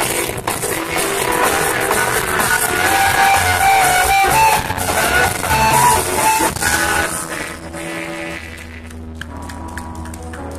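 Live band playing a song on stage, a singer's melody over drums, guitar and keyboard. About eight seconds in the music falls quieter, leaving held low notes.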